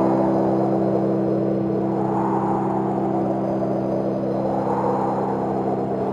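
Electronic music: a low chord held steadily, with a noisy wash above it that slowly swells and fades, peaking about two seconds in and again about five seconds in.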